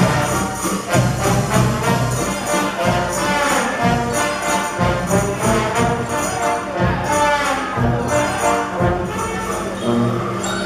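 A Guggenmusik brass band playing live, with brass and sousaphone over a steady beat.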